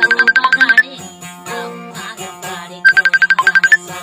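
Acoustic guitar played with fast tremolo picking on one high note, in two bursts of under a second each, about three seconds apart, over lower sustained notes and her singing voice.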